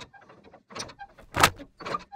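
Sound effects for an animated title card: a run of four short, sharp swishes and clicks, the loudest about one and a half seconds in.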